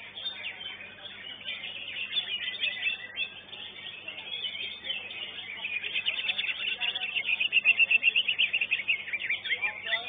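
Cucak ijo (green leafbird) singing a fast, varied song of high chirps and whistles, building to a loud run of rapid repeated notes near the end, with other contest birds singing behind.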